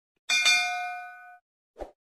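Notification-bell 'ding' sound effect from a subscribe-button animation: one bright chime that rings out and fades over about a second. A short soft knock follows near the end.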